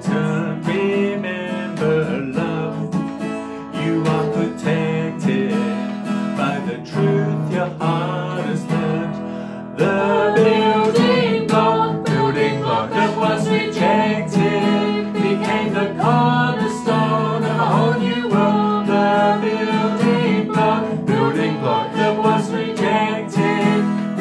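Strummed acoustic guitar with singing; about ten seconds in it grows louder and fuller, with more voices singing along by the end.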